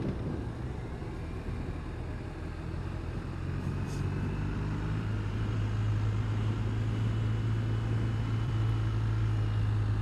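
BMW R1250 RT's boxer-twin engine running steadily on a mountain road, heard from the bike over a rush of wind and road noise. Its low drone grows a little louder about halfway through, then holds.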